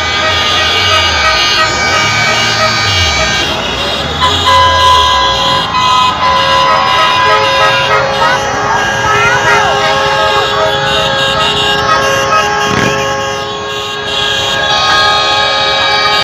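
Many truck air horns and car horns blaring at once, overlapping long held blasts that go on without a break, with voices shouting among them.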